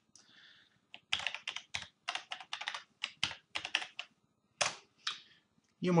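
Computer keyboard typing: a quick, irregular run of keystrokes as a password is entered, with the last couple of strokes near the end.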